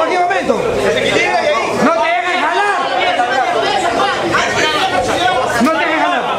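Overlapping voices of several people talking at once, with no single voice clear.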